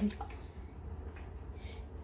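Faint wet squishing of a floured chicken piece being turned by hand in a bowl of beaten egg, with a couple of soft clicks near the start, over a steady low hum.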